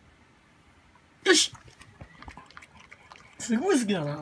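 A pug eating a piece of fish from a ceramic bowl: a run of faint small clicks and smacks of mouth and teeth against the bowl.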